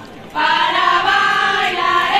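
A group of voices singing a folk song together, dropping out for a moment at the very start and coming straight back in.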